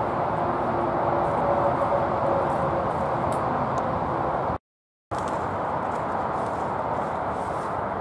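Steady outdoor background rumble, like distant road traffic. It cuts out completely for about half a second a little past halfway, then carries on.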